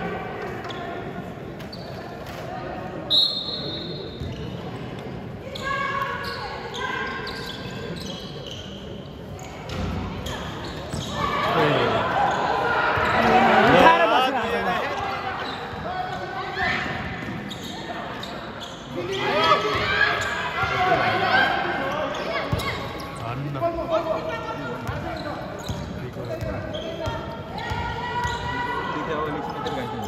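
Basketball game in an echoing indoor gym: a ball dribbled on the hardwood court among players' and spectators' voices. A short shrill tone cuts in about three seconds in, and the crowd's shouting swells to its loudest around the middle.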